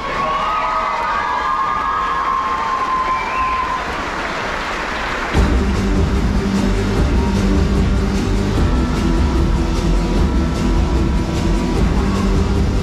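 Audience cheering and whooping, then about five seconds in a loud music track with a strong low beat starts suddenly over the show's sound system.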